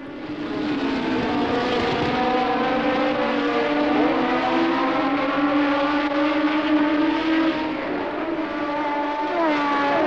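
Formula One racing car engines, a steady multi-toned drone from a pack of cars running at speed. It fades in at the start, and one note falls in pitch near the end.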